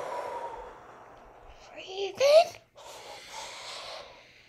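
Two people breathing slowly and audibly in a calming breathing exercise: a long exhale blown out through the mouth, then, after a few spoken words, a long breath drawn in through the nose.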